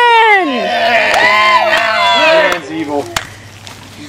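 A small group's voices: one drawn-out call falling in pitch, then several people calling out at once, dying down about two and a half seconds in. A single sharp click comes near the end.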